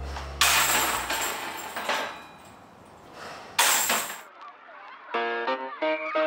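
Background music fades out, broken by two sudden crashing noises about three seconds apart. A new music cue with plucked notes starts about a second before the end.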